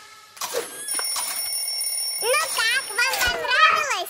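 A toddler vocalizing in a wavering sing-song voice, pitch sliding up and down, through the second half. Under the first part a steady high thin tone holds for about two seconds.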